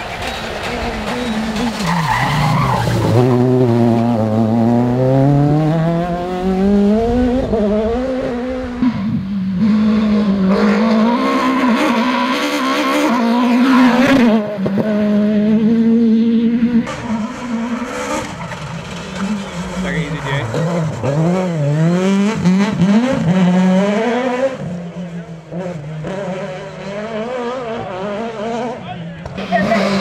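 Peugeot 306 Maxi rally car's two-litre four-cylinder engine revving hard at speed, its pitch repeatedly climbing and dropping back with gear changes and lifts.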